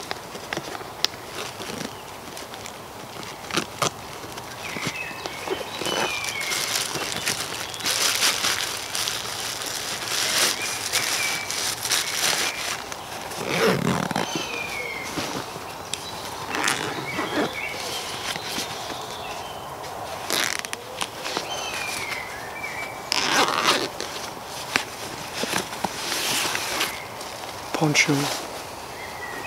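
A nylon rucksack being unzipped and rummaged through: rustling fabric, zipper runs and small clicks, with a rolled poncho pulled out near the end. A bird calls in the background with short falling notes every few seconds.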